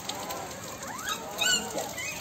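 Newborn puppies squealing and whimpering in thin, high, wavering calls, with one louder, sharper squeal about one and a half seconds in.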